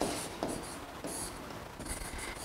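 Faint strokes and light taps of a pen writing on an interactive display board.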